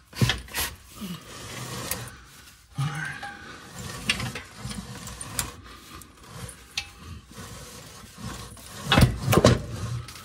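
An automatic transmission being worked off its wooden support and down to the floor by hand: irregular scraping and rubbing with scattered knocks and clunks, the loudest run of knocks near the end.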